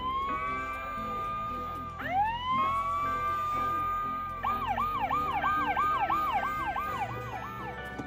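Electronic siren sound effect from a toy ride-on car's dashboard button panel: two rising wails that level off and hold, then a quick warbling yelp of about three cycles a second for a few seconds in the second half.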